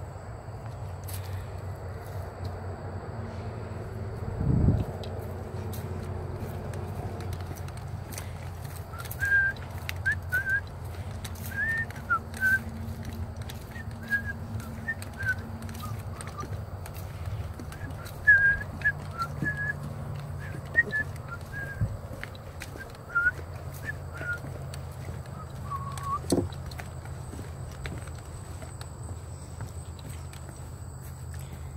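Footsteps on a wooden boardwalk, with a thump early on. Through the middle there is a run of short whistled notes with small slides in pitch, which stop shortly before the end.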